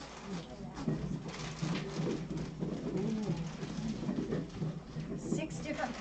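Indistinct women's voices talking in the background, low and muffled, with no clear words.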